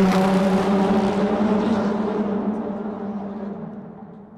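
A steady low drone made of several held tones, fading out gradually until it is gone.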